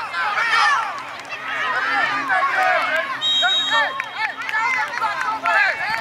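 Many high voices shouting and yelling over each other, from the sideline crowd and players at a youth football game. A little after three seconds in, a referee's whistle sounds once, a steady shrill note lasting under a second.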